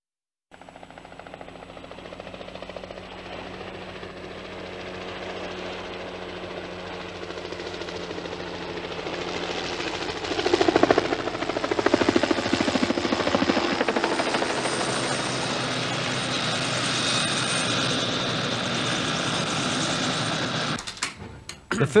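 Helicopter approaching, its rotor beat growing louder over about ten seconds, then holding loud and steady before cutting away near the end.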